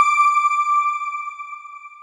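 A single synthesized chime, the news channel's outro logo sting, struck once and ringing out in one clear high note that fades slowly away.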